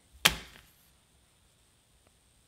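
A single sharp stab sound, a thunk about a quarter of a second in that dies away within half a second, for a toothpick being driven into a paper cutout.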